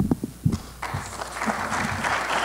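A few low thumps from the podium microphone being handled, then audience applause beginning just under a second in.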